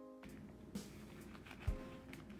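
Soft background music with held notes. Light clicks and one thump about one and a half seconds in come from handling the cash and the zippered binder pocket.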